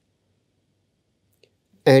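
Near silence, with one faint click about one and a half seconds in; a voice starts speaking right at the end.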